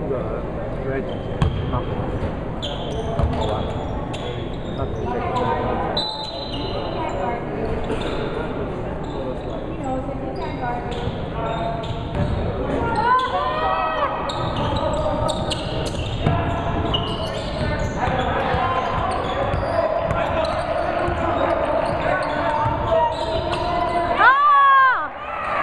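A basketball bouncing on a hardwood gym floor amid players' voices, echoing in a large gymnasium.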